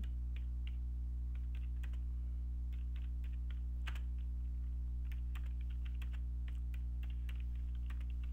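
Computer keyboard being typed on: irregular keystroke clicks in short runs, over a steady low electrical hum.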